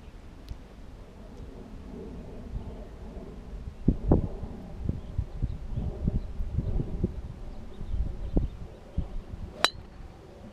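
Low wind rumble on the microphone, then near the end a single sharp click: a golf driver striking a ball off the tee.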